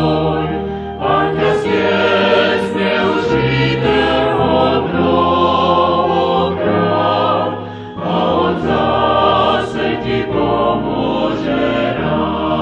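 A vocal group singing a sacred song in harmony, heard from a live 1987 cassette-tape recording; the sung phrases break briefly about a second in and again just before eight seconds.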